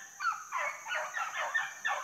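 A pack of rabbit hounds baying together on a rabbit's trail: a rapid run of short, overlapping barks from several dogs.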